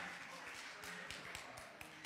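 Faint, scattered handclaps and light taps, irregular and sparse, in a large reverberant hall.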